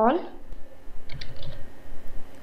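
Computer keyboard typing: a short run of key clicks about a second in.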